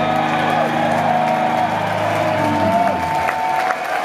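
A live rock band's final chord rings out and dies away about three seconds in, under a crowd cheering and applauding.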